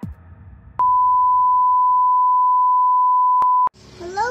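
A single steady electronic beep at one high, pure pitch, lasting about three seconds. It starts with a click about a second in and cuts off suddenly with a click near the end.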